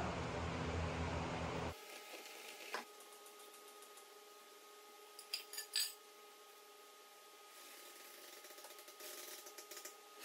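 A few faint, short metallic clicks and clinks over a low steady background hum, the noisier background cutting off abruptly a little under two seconds in.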